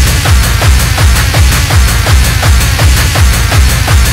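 Early-1990s hardcore (gabber) techno from a DJ mix: a loud, fast, steady kick-drum beat with dense electronic sound layered over it.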